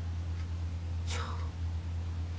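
A pause in a man's talk: a steady low hum runs under the recording, and a little past a second in there is one short breathy whisper or breath from him.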